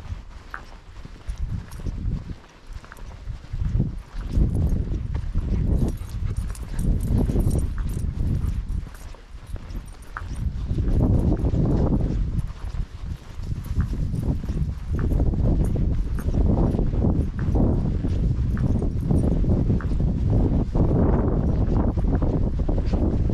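Footsteps of a person walking along a dirt track, with wind rumbling on the microphone that swells and fades, stronger after the first few seconds.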